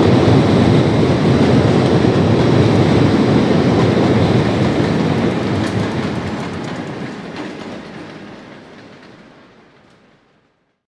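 Passenger train cars rolling across a steel railroad bridge, a steady loud rumble of wheels on rails that fades out over the last four seconds as the final cars pass.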